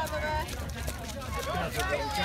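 Background voices of spectators talking and calling out, over a low steady rumble.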